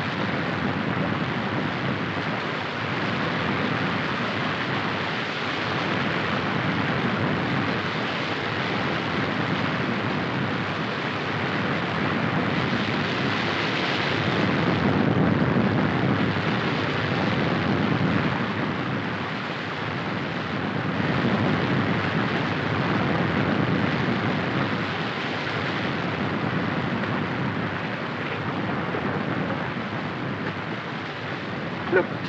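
Waterfall and white-water stream rushing steadily, swelling louder about midway.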